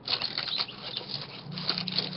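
Paper rustling and scratching in irregular bursts as journal pages and cards are handled.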